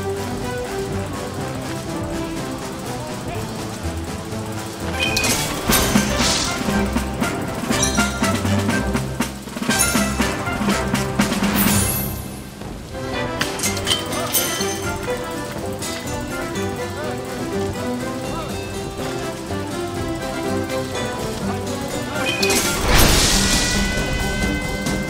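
Video slot game audio: a steady musical soundtrack with crashing hit sound effects as winning symbols land, a few seconds in and again at about ten to twelve seconds. Near the end a louder burst and rising tones open the Big Win celebration.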